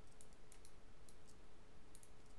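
Faint computer mouse clicks, several scattered through, over a faint steady hum.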